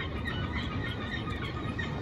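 Birds chirping in short, scattered calls over the steady low hum of a busy street.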